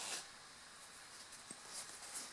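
Faint handling noise from hole-saw parts and a foam-lined plastic tool case: a short rustle at the start and a single small click about one and a half seconds in.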